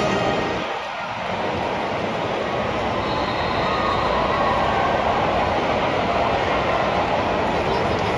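Steady crowd noise of a large football stadium audience, a continuous hubbub that swells slightly after a brief dip about a second in.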